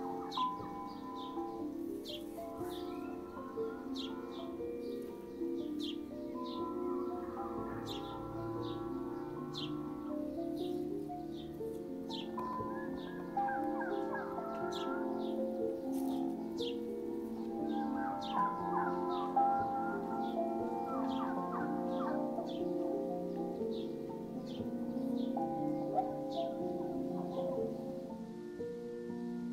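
Ambient synth pad music layered with a birdsong field recording, played through a light-controlled filter in Ableton. Sustained chords hold underneath, short high chirps repeat throughout, and fuller bird calls come and go above the pads.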